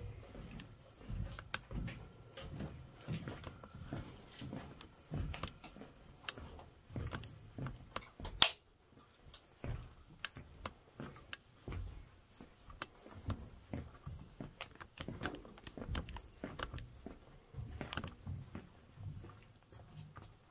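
Quiet steel ship compartment with scattered soft thumps of footsteps and small clicks of handled gear. One sharp click about eight seconds in, and a brief high beep about twelve seconds in.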